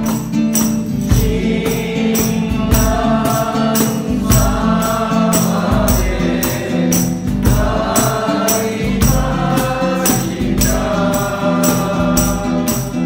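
A mixed group of voices singing a Japanese Buddhist song together in a 3/4 swing, accompanied by a strummed nylon-string guitar. A tambourine keeps a steady beat of short jingling strokes.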